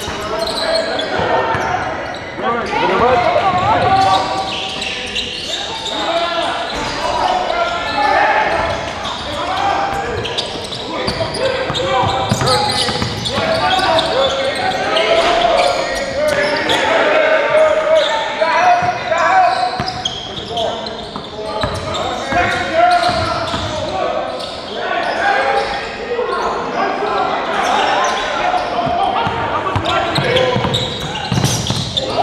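Indoor basketball game in a large gym: many overlapping voices of players and spectators calling out, mixed with a basketball bouncing on the hardwood court.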